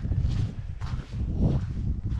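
Footsteps of hikers on a packed dirt and snow trail, a few soft steps, over a steady low rumble of wind on the microphone.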